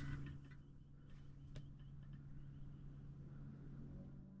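Quiet room tone with a steady low hum, a string of faint high chirps through the middle, and a single sharp click about one and a half seconds in.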